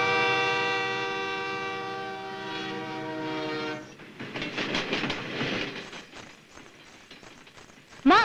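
A passing suburban electric train sounding a long, steady horn that fades and cuts off about four seconds in, followed by the clatter of its wheels on the rails dying away.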